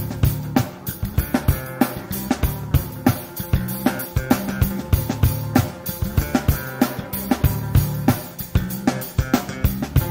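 Instrumental passage of a funk band's recording: a busy drum kit with snare and bass drum hits over low bass notes and other instruments.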